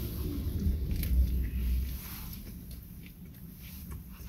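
A man biting into a sub sandwich and chewing with his mouth closed, close to the microphone. The chewing is louder in the first two seconds, then quieter.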